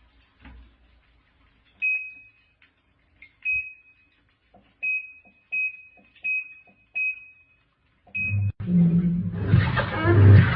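Top-loading washing machine's control panel beeping as its buttons are pressed: about seven short, high beeps, each with a click. Near the end a much louder sound with a low hum sets in.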